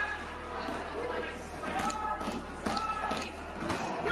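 Voices in a large, echoing parliamentary chamber, with no clear words, and a few sharp knocks in the second half.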